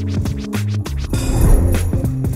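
Background music with a steady beat, bass notes and drum hits, with a stretch of noisy, scratch-like sound in the second half.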